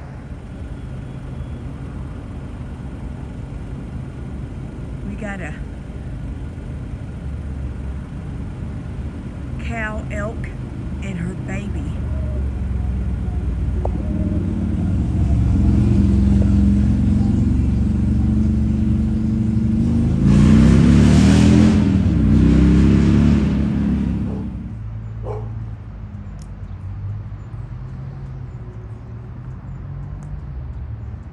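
A motor vehicle's engine rumbling, swelling louder over several seconds with a rising engine note as it passes near the middle of the clip, then dropping away quickly. A few faint chirps are heard early on.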